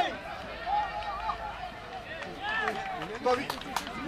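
Several voices shouting calls across an open rugby field during play, overlapping and rising and falling in pitch. There are a few sharp clicks near the end.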